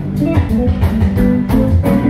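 Live band playing an instrumental passage: guitar and bass guitar over a steady drum beat, with no lead vocal at this moment.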